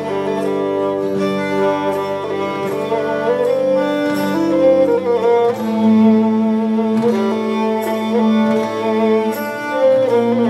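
Slow Cretan bowed-string music with long held notes. A large upright bowed instrument, played like a cello, sustains low notes; a new low note begins about five and a half seconds in, under higher held bowed tones.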